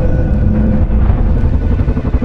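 Film sound design of a submarine running fast underwater: a loud, deep, steady rumble with faint held tones over it. A fast, even pulsing joins in about halfway through.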